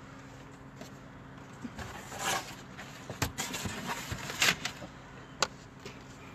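Rustling and a few sharp clicks and knocks from someone moving about inside a parked car, over a low steady hum.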